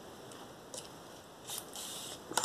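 A sewing needle gripped with pliers being pulled through layers of ribbon: mostly quiet, a faint tick, then short scratchy rustles near the end as the needle and thread come through.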